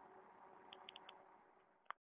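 Near silence, with a few faint, short, high chirps about a second in and a single sharp click near the end.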